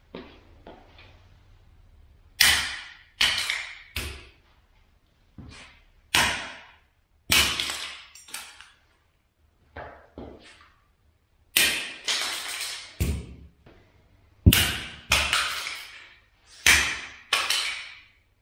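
Rubber mallet striking plastic tile-leveling clips on a freshly tiled floor to knock them off. About twenty sharp cracks come at irregular intervals, roughly one a second and sometimes in quick pairs, each dying away quickly.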